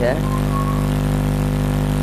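A steady low mechanical hum, like a running engine, holding one pitch without change.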